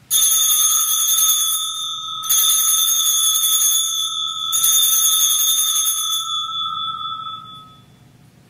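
Altar bell rung three times, about two seconds apart, each strike leaving a bright, steady ring that overlaps the next and fades out near the end. It marks the elevation of the consecrated host at Mass.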